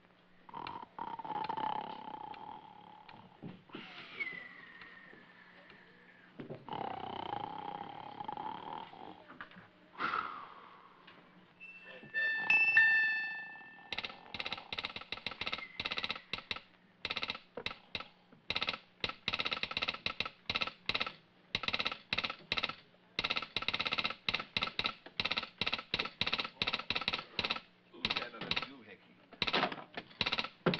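A bell ringing in rapid, uneven runs of strokes through the second half, as if sounding to wake someone, after sliding whistle-like tones and a short bright tone about halfway in.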